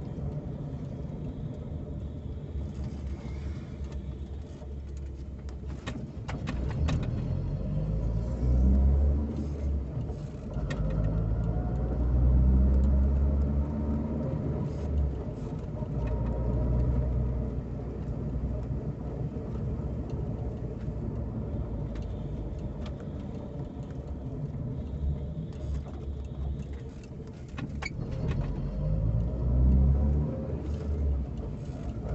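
Car engine and road noise heard from inside the cabin while driving through town, the engine note rising and swelling several times as the car picks up speed, with a few sharp clicks.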